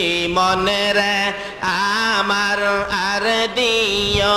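A man's voice chanting in a slow, melodic tune, holding long notes that waver and glide between short breaths.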